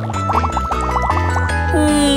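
Cartoon bubbling sound effect, a rapid run of short rising blips that stops a little past the middle, over children's background music with a steady bass line. Near the end a falling tone glides down.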